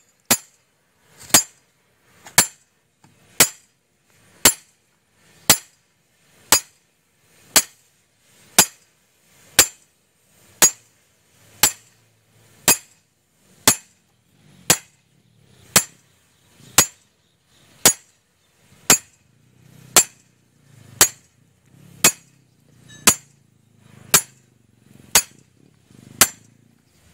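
Sledgehammer blows on a steel pipe driving a large bearing onto a shaft: a sharp metallic strike about once a second, evenly paced throughout. Hammering the bearing on like this is the improper installation method that can damage the bearing's structure.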